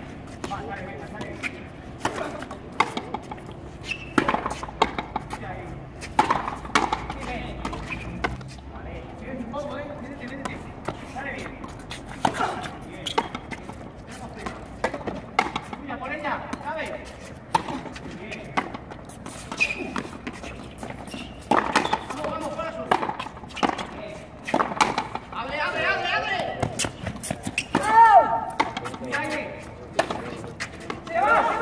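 Frontenis rally: repeated sharp smacks of a hollow rubber ball struck by racquets and rebounding off the front wall and floor, at an uneven pace. Voices call out during the second half.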